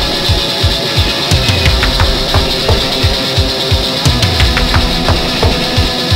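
Instrumental opening of a heavy rock song, before the vocals come in: dense distorted instruments over a fast, steady kick-drum beat of about four thumps a second.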